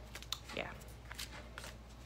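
Tarot cards being handled, a series of light, irregular clicks and ticks, under a steady low hum.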